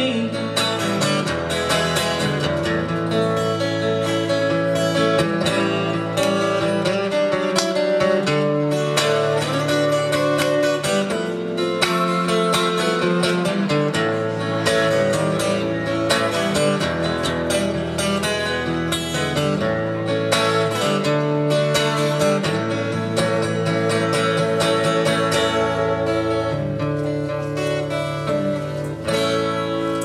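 Acoustic guitar strummed steadily without singing, an instrumental passage of a blues song. The chords change every few seconds.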